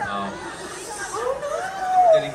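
Amplified voice of a stage performer making drawn-out exclamations that slide up and down in pitch, the longest rising and falling near the end, with a breathy hiss early on.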